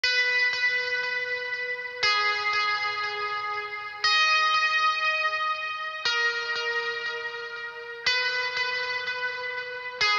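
Song intro on a guitar with effects: a ringing chord struck every two seconds, each one fading until the next, with lighter picked notes about twice a second in between.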